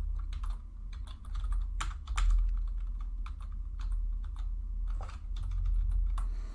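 Typing on a computer keyboard: irregular keystrokes over a steady low hum.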